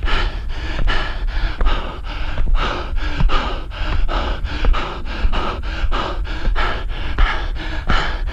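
Hard, rapid panting of a runner out of breath from running up steep stairs, in a steady rhythm of quick breaths, over a steady low rumble.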